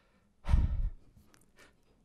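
A man's sigh, one heavy breath blown into a podium microphone about half a second in, lasting about half a second.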